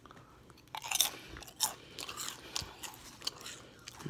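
A person chewing crisp plain potato chips, with irregular crunches starting just under a second in.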